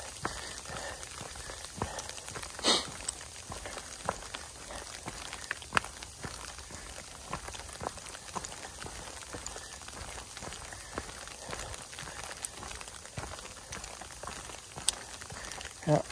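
Light rain: scattered drops ticking irregularly, with one sharper tap about three seconds in.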